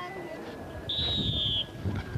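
A whistle blown once: a single steady high note lasting under a second, over the low murmur of an outdoor crowd.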